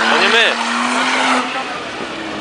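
BMW 3 Series (E36) saloon doing a burnout: the engine is held at steady high revs while the spinning rear tyres squeal, then the revs drop away about one and a half seconds in.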